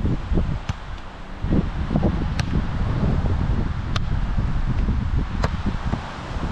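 Wind buffeting the microphone in a steady ragged rumble. Four sharp slaps sound about a second and a half apart, as hands strike the volleyball during a rally.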